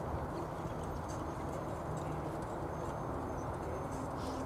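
Hoofbeats of a pair of harness ponies trotting on a sand arena while pulling a carriage, soft irregular footfalls over a steady background rumble.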